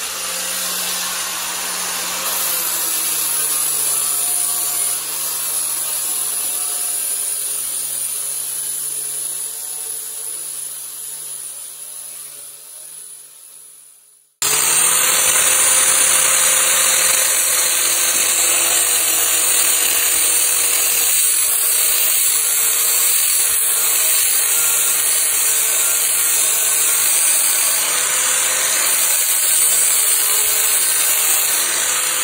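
Angle grinder with a flap disc grinding the steel edge of a car door skin to peel the old skin away. The sound fades over the first half and breaks off suddenly about halfway, then the grinding resumes loud and steady with a high motor whine.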